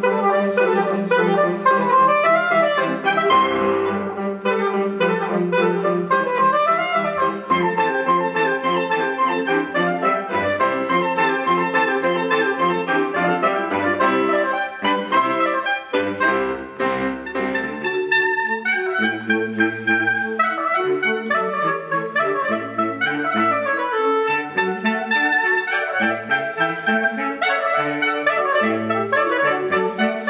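A saxophone ensemble and a grand piano playing classical chamber music live, several lines of busy, quick notes moving together.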